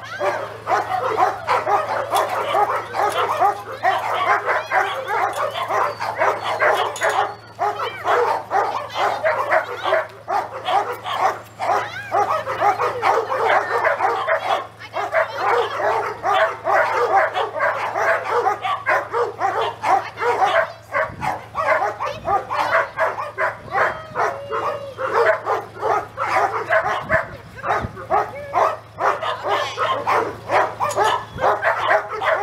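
Dogs barking and yipping without a break, the calls crowding one another.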